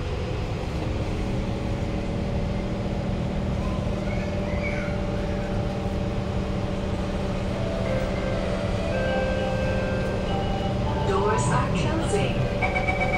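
Kawasaki C151 metro train's GTO-VVVF traction inverter and motors whining under power, steady tones with a few short gliding pitch changes, over the rumble of wheels on track.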